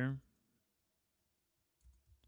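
A moment of near silence, then a few faint computer keyboard keystrokes near the end.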